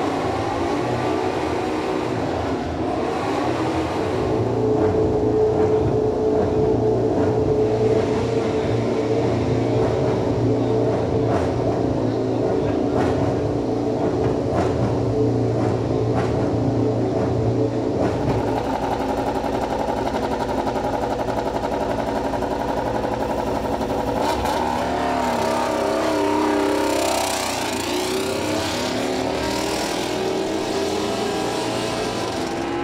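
A MotoGP racing motorcycle's engine running steadily in the pit garage. Near the end its pitch rises and falls as it is revved.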